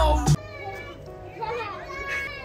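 Music with a heavy bass beat cuts off suddenly a moment in, giving way to children playing and talking outdoors, quieter, with a light voice rising and falling.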